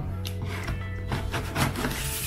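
Background music with sustained low notes, over a few short scraping rustles of a cardboard package being worked open by hand.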